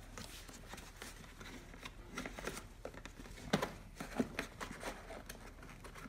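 A plastic infant car seat and a car seat belt being handled, with a few soft knocks and rustles as the shoulder belt is routed behind the seat's back into its belt guides.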